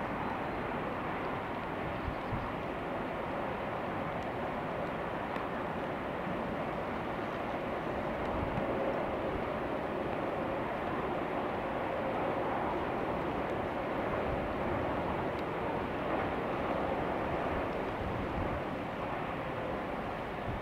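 Class 66 two-stroke V12 diesel locomotive approaching at the head of a container train: a steady engine drone with train running noise, a little louder from about eight seconds in.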